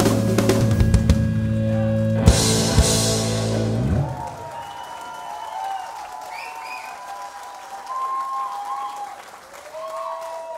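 A rock band (acoustic and electric guitars, bass and drums) rings out a final chord with drum hits, and it cuts off about four seconds in. Then comes a quieter stretch of audience applause with cheering voices and whistles.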